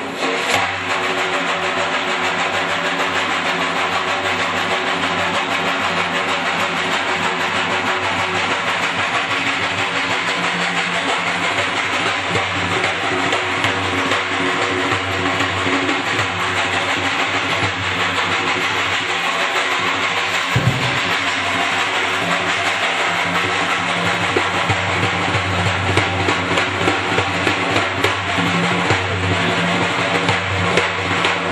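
Persian daf frame drum played solo: a fast, unbroken roll with the metal ringlets on its frame jingling constantly over deep skin strokes. One heavier bass stroke lands about two-thirds of the way through.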